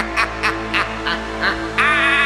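A man laughing in short rapid bursts, about four a second, over a sustained held chord. Near the end it turns into a longer, wavering vocal sound.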